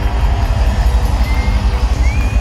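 Live rock band playing loud through a big outdoor PA, heard from within the crowd, with a heavy, boomy bass end.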